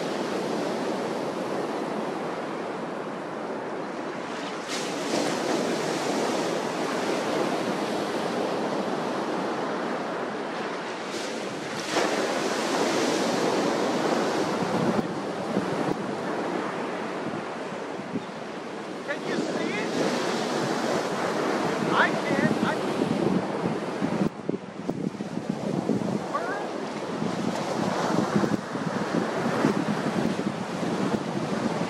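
Ocean surf breaking on a sandy beach, a steady wash that swells louder with each breaking wave. Wind is buffeting the microphone.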